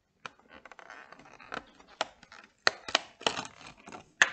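Fingers scratching at and prying open a perforated cardboard advent calendar door: irregular scraping with a run of sharp clicks and small tearing cracks as the perforations give, the sharpest about two and a half and three seconds in.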